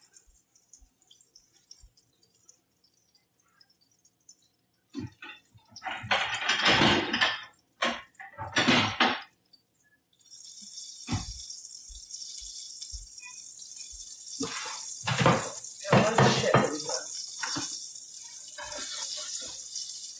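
Kitchen sink tap running, turned on about halfway through, as hands are washed under it, with a few knocks at the sink.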